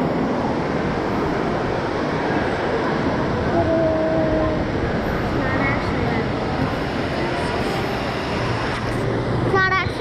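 Indoor waterpark ambience: a steady rush of water under a crowd of voices, with one voice briefly calling out about four seconds in.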